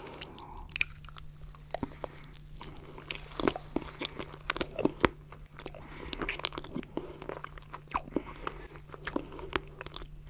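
Close-up mouth sounds of eating a spoonful of stracciatella pudding: soft wet chewing and lip smacks with small crunches from the chocolate flakes, a run of sharp clicks that is densest and loudest around the middle.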